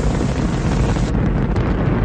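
Space Shuttle rocket engines and boosters roaring in flight: a steady, loud noise heaviest in the low end, with the highest hiss dropping away about a second in.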